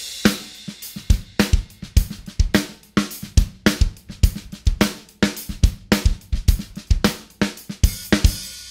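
A rock beat played on a DW Exotic acoustic drum kit with Zultan cymbals: kick drum, snare and hi-hat in a steady groove. It is picked up by the close microphones and the room microphones together.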